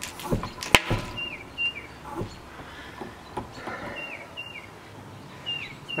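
A bird chirping outdoors, repeating pairs of short, falling notes every couple of seconds. A few sharp knocks come in the first second.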